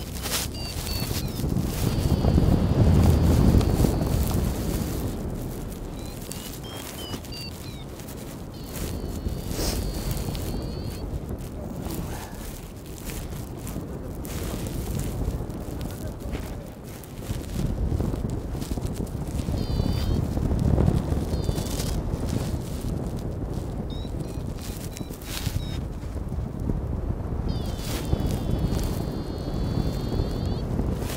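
Wind buffeting a phone microphone in gusts, loudest a couple of seconds in and again around the twentieth second, with handling knocks and several brief runs of faint high chirps.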